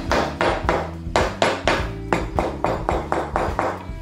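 Claw hammer tapping upholstery staples down into a wooden chair-seat board in quick, even light blows, about five a second. The staples are being driven home because the staple gun did not seat them all the way into the wood.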